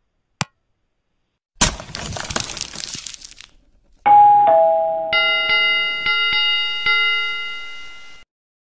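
Stock subscribe-animation sound effects. A single click, then a noisy rush lasting about two seconds, then a two-note falling ding-dong chime. A small ringing bell follows, struck about five times, each strike fading.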